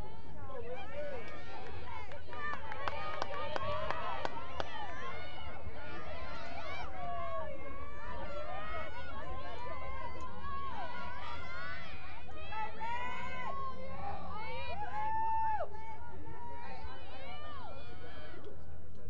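Several voices calling out and chattering over one another around a lacrosse draw, with a few sharp clicks a few seconds in and a steady low hum underneath.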